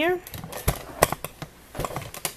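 Handling noise: a scattered series of light clicks and taps, with one duller knock a little after a third of the way in.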